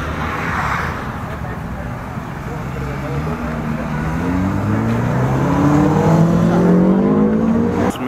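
A motor vehicle's engine speeding up, its pitch rising steadily and its sound growing louder over the last five seconds.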